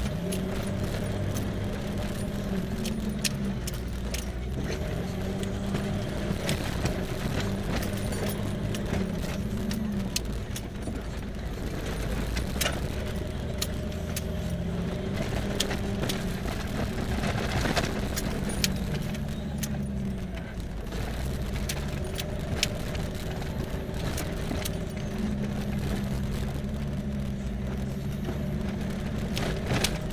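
Off-road vehicle engine pulling up a rough dirt trail, heard from inside the cab, its pitch rising and falling repeatedly with the throttle. Frequent short clicks and rattles from the cab and loose items jostling over the bumps.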